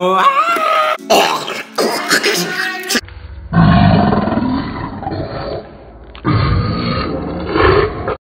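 A human voice making zombie-style growls and grunts, wavering in pitch, then broken noisy bursts. From about three and a half seconds, a louder, duller stretch of noisy sound from a different recording takes over, with a short dip in the middle.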